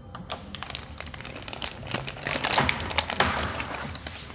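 Plastic wrapping crinkling and rustling, with a scatter of small, irregular clicks, as a small emblem is unwrapped and fitted by hand; the clicks come thickest a little past halfway.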